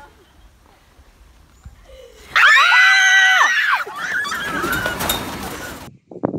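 A spider monkey gives one loud, drawn-out call about two seconds in, its pitch rising and then falling, followed by quieter, rougher sounds.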